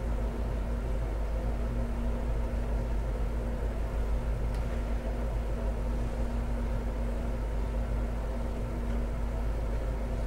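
Steady low rumble and hum of background noise, with a faint steady tone running under it that fades out near the end.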